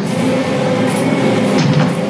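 Loud, dissonant orchestral horror score: several clashing tones held steady, with a couple of sharp accents about a second in and near the end.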